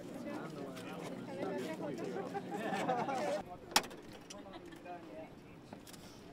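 Indistinct voices of people talking, which stop a little past halfway, followed soon after by a single sharp click.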